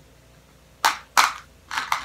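Three short, sharp crackles: two loud ones about a third of a second apart, then a softer cluster near the end.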